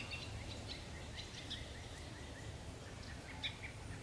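Faint garden ambience: small birds chirping, with a quick run of short repeated chirps in the first half and a few scattered higher chirps later, over a low steady background rumble.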